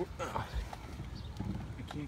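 Light, scattered knocks and clicks of hands and tools working around a car's steering column and footwell, with a short stretch of voice at the start.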